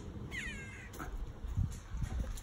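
A single short animal call about half a second in, falling in pitch, followed by a dull thump a little later.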